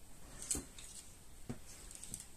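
Faint handling of yarn and crochet work: two soft taps about a second apart over quiet room noise.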